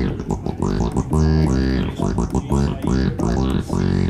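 Yamaha Montage synthesizer playing a TB-303-style squelchy acid bass line. Short repeated bass notes are stepped by the motion sequencer, with the filter sweeping up and down on each note.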